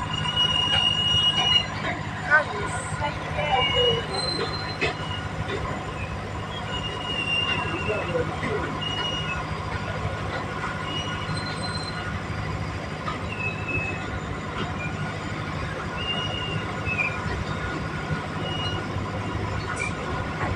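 Freight train of open wagons rolling slowly past, a steady low rumble with short high-pitched wheel squeals coming and going every second or two.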